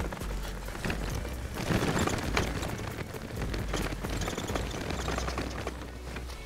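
Bicycle rolling over a sandy, bumpy dirt track: tyres crunching through sand and the bike rattling in a dense run of irregular clicks, over a steady low rumble of wind on the microphone.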